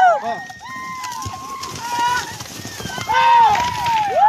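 People yelling in high, drawn-out shouts that rise and fall, loudest at the start and again about three seconds in, over the irregular thuds of horses galloping on a dirt trail.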